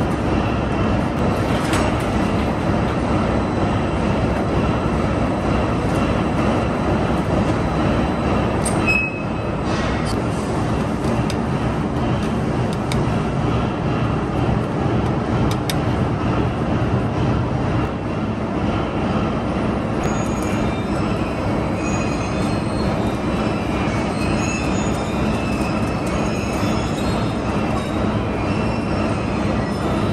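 Steel coil slitting line running: rotary slitter knives cut a sheet-steel coil into narrow strips that feed onto a recoiler, making a steady, loud mechanical noise. The noise dips briefly about nine seconds in, and faint short high squeaks come in the second half.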